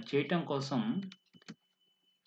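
A man speaking for about a second, then a few short computer-keyboard clicks about a second and a half in. A faint steady high whine runs underneath.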